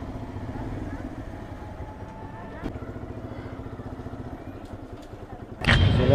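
Yamaha R15 V2 motorcycle's single-cylinder engine running steadily while riding, with one short click about halfway through. A man's voice cuts in loudly near the end.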